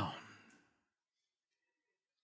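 The end of a man's spoken word fading out in the first half-second, then near silence.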